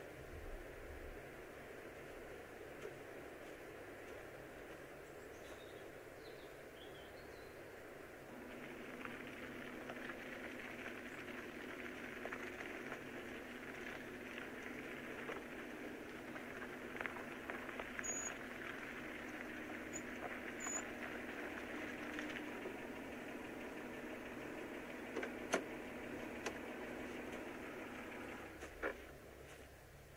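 A car engine running low and steady, starting about eight seconds in, with a few faint bird chirps in the middle and a few sharp clicks near the end.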